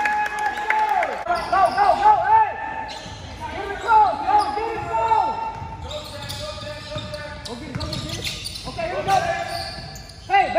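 Basketball game play on a hardwood gym floor: sneakers squeaking in short, repeated squeals and the ball bouncing, with voices calling out in the hall.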